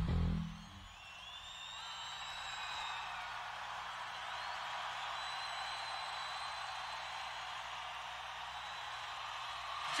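A metal band's final hit cuts off about half a second in. A large arena crowd then cheers and whistles, with a low steady hum from the amplifiers underneath.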